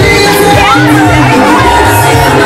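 Loud dance music with a pulsing bass line, and a crowd cheering and shouting over it.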